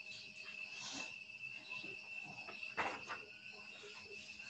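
Faint, steady high-pitched insect trill, with a soft knock about three seconds in.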